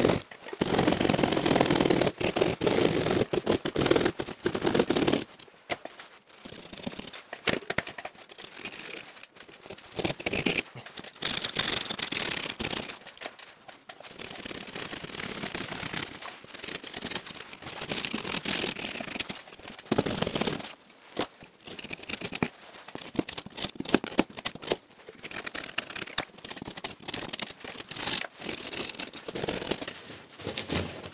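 Hand drywall saw rasping through double-layered gypsum plasterboard in quick, uneven strokes. The strokes are louder and fuller for the first five seconds, then lighter and scratchier as the blade is run shallow and at an angle to avoid cutting the cables behind the board.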